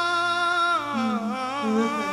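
A mournful, wailing melody: one high note held steadily, then wavering with vibrato from about a second in, as a second, lower line joins.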